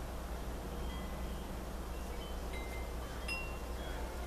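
Wind chimes ringing softly: scattered clear tones at several different pitches from about a second in, over a steady low background hum.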